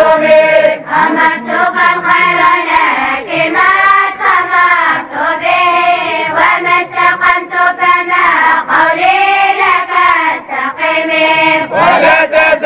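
A group of boys and young men chanting in unison, drawn-out melodic phrases with brief breaks for breath between them.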